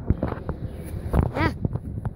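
Footsteps on grass and the rubbing and knocks of a handheld phone as someone walks, with a short 'ah' from a girl's voice partway through.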